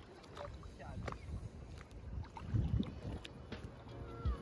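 Shallow sea water sloshing and splashing around someone wading beside an inflatable paddleboard, with uneven low swells and a few faint clicks.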